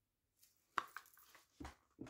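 Cardboard product box handled in the hands: a sharp tap a little under a second in, a lighter click just after, then faint ticks and a soft thump near the end.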